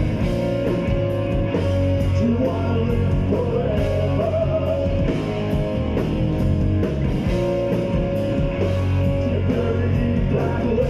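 Gothic rock band playing live through a club PA: electric guitars, bass and drums with a steady beat and regular cymbal hits, heard from among the crowd.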